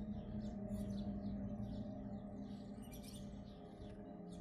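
Small birds chirping again and again over a low, steady hum.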